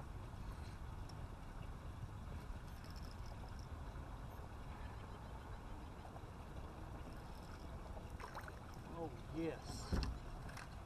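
Faint, steady low rumble of background noise, with a short spoken 'yes' and a sharp knock near the end.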